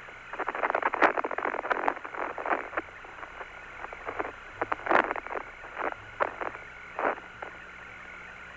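Static on the Apollo 17 air-to-ground radio link between transmissions: a narrow, tinny hiss with clicks and crackles, thick in the first couple of seconds and scattered after.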